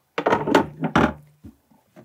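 Knocks and scraping of a hard work-surface cover being set down and pressed into place over moulded storage trays, about a quarter second in and again about a second in.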